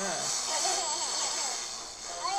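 Cartoon trailer sound effects: a steady hissing zap as the baby fires laser beams from his eyes, with a baby's short babbling sounds over it.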